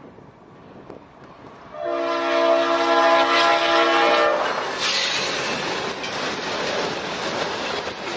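Leslie RS-5T five-chime air horn on Norfolk Southern GE C40-9W 9588 sounding one long blast of about two and a half seconds, starting a couple of seconds in and cutting off abruptly. The locomotives then pass close by with a loud, steady rush of engine and wheel noise.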